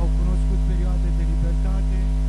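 Steady electrical mains hum on the broadcast audio: a loud, unchanging low hum with a stack of higher overtones. Faint speech can be heard beneath it.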